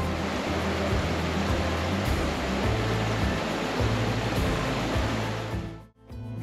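Steady rushing of flowing creek water, with low sustained background music notes underneath; both fade out near the end.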